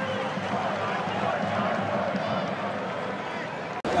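Stadium crowd noise from a football match: a steady hubbub of many voices, broken off by a sudden cut just before the end.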